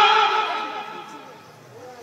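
A man's voice through a microphone holding one long drawn-out vocal sound that slowly falls in pitch and fades away over about a second and a half.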